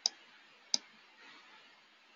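Two sharp computer mouse clicks about three quarters of a second apart, each short and dry.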